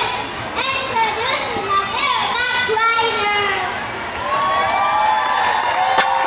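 Young children in a gymnasium crowd shouting and calling out with high, rising and falling voices, swelling about four seconds in into a fuller cheer from the audience.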